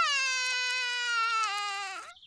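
A cartoon toddler rabbit crying: one long wail in a small child's voice, slowly falling in pitch and stopping near the end.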